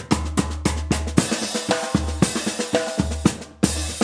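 Murga drum section (bass drum, snare and cymbals) playing a fast, steady beat, with a brief break near the end.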